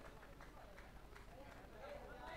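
Near silence: faint distant voices.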